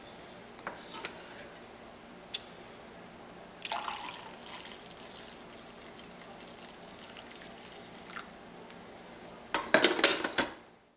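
Coffee poured from a glass drip-coffee-maker carafe into a ceramic mug: a steady liquid stream, with a louder clatter about four seconds in and a few clinks near the end as the carafe is handled.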